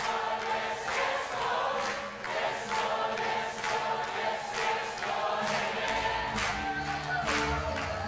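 Large congregation singing a worship song together with the worship band, over a steady beat of about two strokes a second. Deeper bass notes come in about six seconds in.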